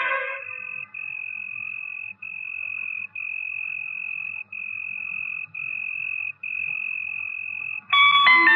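A steady high-pitched tone, broken by short gaps into stretches of about a second each, over a faint low hum.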